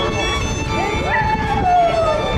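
Street violin music with long sliding notes that rise and fall in pitch, the longest rising about a second in and sinking slowly, over a steady held tone.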